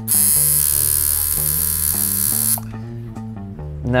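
Electric tattoo machine buzzing steadily as the needle works into skin, then cutting off suddenly about two and a half seconds in.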